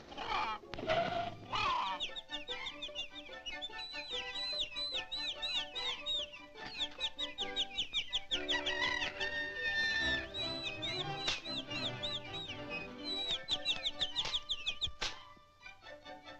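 Cartoon chicken sound effects over the film's music score: a long, rapid run of high, repeated peeping calls from chicks and hens, which stops shortly before the end.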